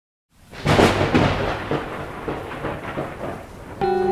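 A thunderclap crashes and rolls away over falling rain. Music with sustained notes comes in near the end.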